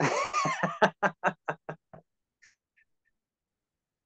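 A man laughing hard: a loud opening burst, then a quick run of short 'ha' pulses, about six a second, that fade out about two seconds in.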